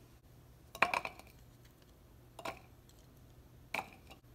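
Peeled garlic cloves dropping from a glass bowl into an empty plastic grinder jar, clattering in three short bursts. The first, about a second in, is the loudest; the others come near the middle and near the end.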